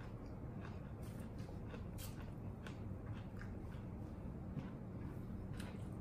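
Faint mouth sounds of eating: chewing and crunching of cucumber slices, with scattered light clicks.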